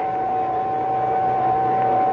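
Radio-drama sound effect of a receiver holding a carrier wave: a single steady tone over an even hiss of static.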